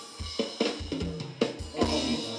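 Live band music carried by a drum kit: a steady beat of kick drum and snare with cymbals, over a bass line, played through the stage PA.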